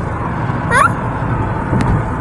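Car travelling at highway speed heard from inside the cabin: a steady low rumble of engine and tyre noise.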